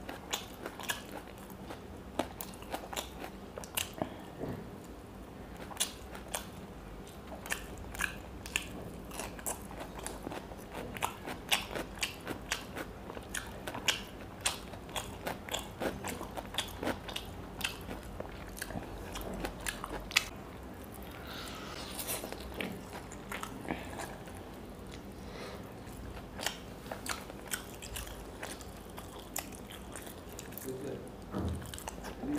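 Close-miked eating sounds of a person chewing and biting into whole fried fish eaten by hand, with frequent sharp, irregular mouth clicks and crunches.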